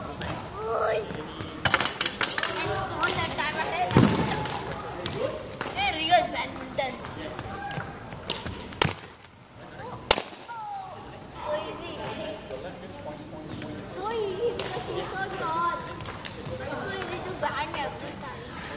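Indistinct voices of several people, with a few sharp smacks scattered through, the loudest about ten seconds in.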